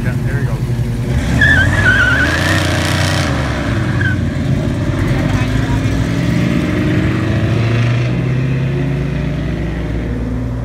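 Classic cars accelerating hard away from a standstill, engines revving. The loudest part is a burst about one to three seconds in that carries a short high wavering squeal, and a second engine's pitch climbs later on.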